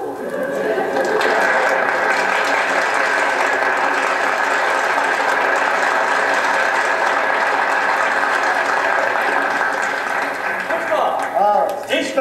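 Theatre audience applauding, reproduced from an LP on a Rigonda radiogram: a dense, steady clatter that swells up in the first second and dies away about ten to eleven seconds in.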